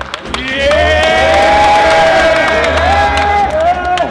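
A group of men cheering and clapping in a huddle, with a long held shout that starts about half a second in and a few shorter shouts near the end.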